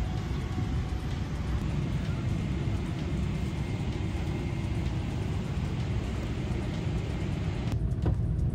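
Jet airliner cabin noise: a steady deep engine rumble heard from inside the cabin. Near the end an edit brings in a louder, deeper rumble as the plane climbs out after takeoff.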